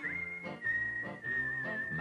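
TV advert soundtrack: a whistled melody holding one long high note, stepping slightly lower partway through, over soft backing chords.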